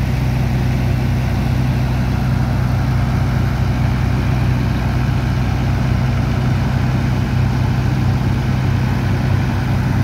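Engine of a sand-dredging pump running steadily at a constant speed, a deep even drone.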